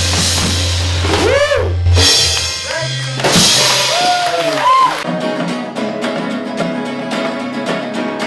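A live band's final chord rings out over drums and cymbals, with several rising-and-falling shouted whoops over it. About five seconds in it cuts abruptly to strummed acoustic guitar music.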